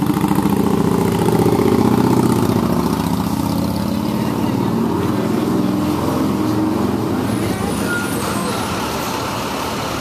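A motor vehicle's engine idling, a steady low hum that is strongest in the first few seconds and fades over the second half.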